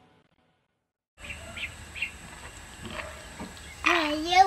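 About a second of silence, then a few short, high bird chirps over a faint, steady outdoor background with a thin high-pitched whine.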